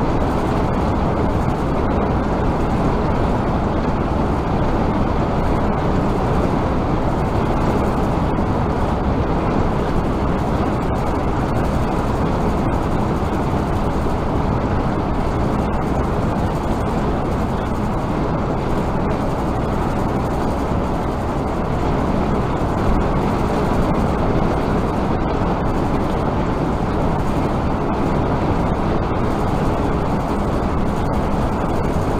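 Steady road and engine noise of a vehicle cruising at highway speed, heard from inside the cab through a dash-cam microphone. The rumble stays level throughout, with no distinct events.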